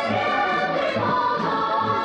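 Music: a choir singing sustained notes over a steady low beat of about two pulses a second.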